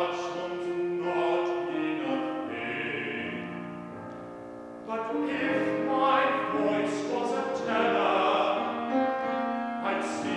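Bass voice singing in operatic style with piano accompaniment, dropping softer around four seconds in and swelling louder again from about five seconds.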